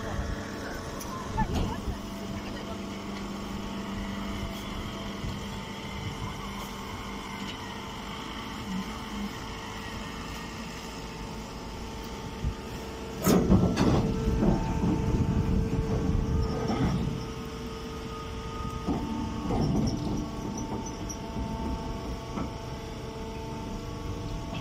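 Hydraulic baler's motor and pump running with a steady hum. A sharp knock just past halfway is followed by a few seconds of louder noise.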